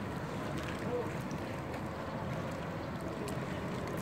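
Swimming-pool water lapping and gently splashing as a swimmer strokes through it, a steady wash of noise with wind on the microphone.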